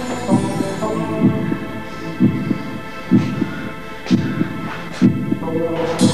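Film soundtrack of a low throbbing pulse, its thumps coming in pairs about once a second like a heartbeat, over a steady droning hum of sustained tones.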